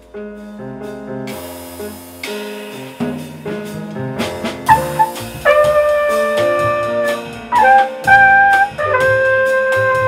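Live small-group jazz: piano and upright bass playing, with a trumpet coming in about halfway on long held notes that become the loudest part.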